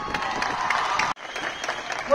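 Large audience applauding as a sung choral number ends, a dense patter of many hands clapping. The clapping breaks off abruptly about a second in and resumes at once.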